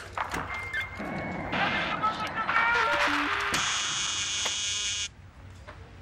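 Arcade video game sound effects: short electronic beeps, some stepping down in pitch, then a loud harsh buzz for about a second and a half that cuts off suddenly about five seconds in.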